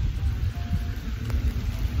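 Steady rain falling, with wind buffeting the microphone in a constant low rumble.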